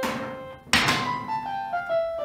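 Electronic keyboard playing single-note melody lines in a piano voice, the notes stepping down in pitch after the first second. Two sharp noisy hits break in, one at the start and a louder one just before a second in.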